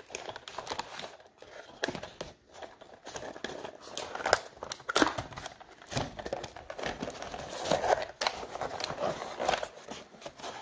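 Small cardboard CPU retail box being opened and handled by hand: irregular rustling, scraping and light clicks of the cardboard flaps as they are folded back.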